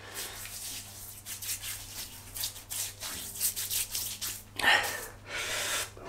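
Palms rubbing over a wet face: a soft, repeated scrubbing that is louder for a moment about four and a half seconds in.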